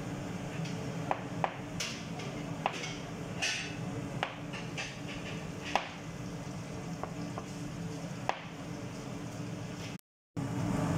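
Large kitchen knife chopping cooked chicken on a plastic cutting board: irregular knocks of the blade striking the board, about one a second.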